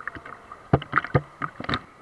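Aerated water churning steadily in a spa jet pool, with a quick cluster of sharp, loud splashes close to the microphone in the second half.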